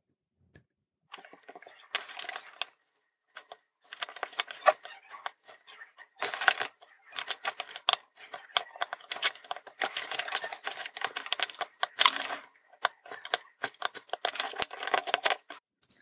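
Bursts of fine crackling and clicking, with short pauses between them, as a soldering iron and solder wire work the pins of a tactile push-button on a small circuit board.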